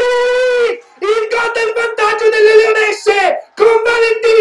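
A football commentator's drawn-out goal call: one voice shouting long, held syllables at a high steady pitch, several times over with short breaths between.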